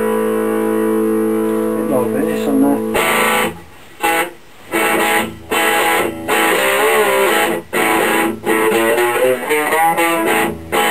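Four-string toilet-seat cigar box style electric guitar with a P-bass pickup, played through an amplifier. A held chord rings steadily for about three seconds and then cuts off, followed by short played phrases broken by brief silences, some notes wavering in pitch.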